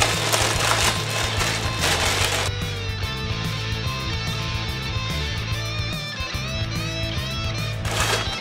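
Background music with a steady bass line and guitar. Over the first two and a half seconds a plastic shipping mailer is rustled and torn open by hand.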